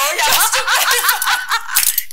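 Several people laughing and snickering over one another, with bits of talk mixed in.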